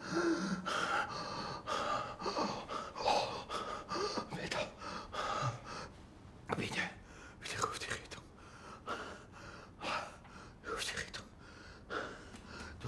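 A man gasping and breathing hard in irregular, noisy gasps, with a short strained vocal sound at the start.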